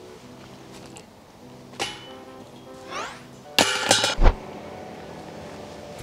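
A disc golf putter striking the chains of an Innova chain basket about three and a half seconds in: a loud metallic clinking rattle lasting about half a second and ending in a low thump. A lighter click comes about two seconds in, and background music with steady held tones plays throughout.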